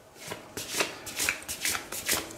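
A deck of fortune-telling cards being shuffled by hand: a quick, uneven run of card snaps and riffles.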